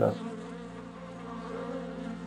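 Steady hum of a mass of honeybees buzzing together, an even drone with no breaks.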